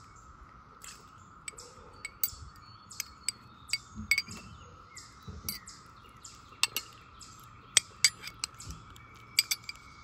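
Stainless steel fork tines clinking and scraping against a glass bowl while mashing pitted cherries: irregular light clinks, with a few sharper ones about two-thirds of the way through.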